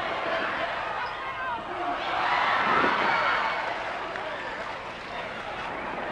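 Arena crowd shouting and cheering, many voices at once, swelling about two seconds in and easing off again toward the end.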